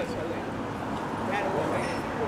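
City street sound: indistinct voices of passers-by over a steady hum of traffic.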